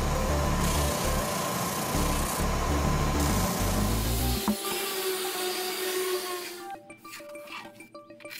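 Benchtop spindle sander running, its sanding drum rubbing against the inside edge of a plywood cutout, over background music. The sander noise fades out about two-thirds of the way through, leaving the music.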